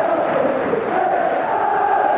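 Large football-stadium crowd chanting in a steady, sustained mass of voices.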